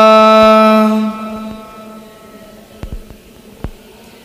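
Buddhist monk's chanting voice through a microphone, holding one long steady note that stops about a second in and fades out with echo. Two faint clicks follow in the quiet pause.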